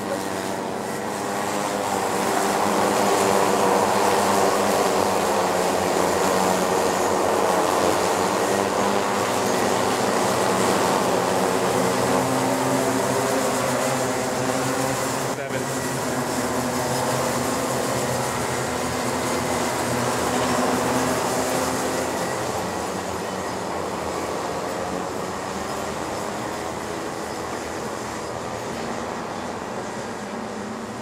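A pack of Rotax Micro Max cadet karts with 125cc two-stroke engines racing by, many engine notes overlapping and wavering as the drivers work the throttle. It builds over the first few seconds, stays strong for a long stretch, then slowly fades as the pack pulls away, with a single brief click about halfway through.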